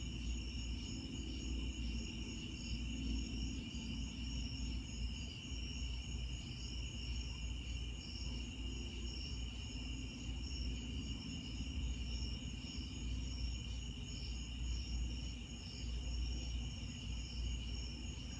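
A night chorus of crickets chirping without a break: a continuous high trill with faster pulsing notes above it, over a low rumble.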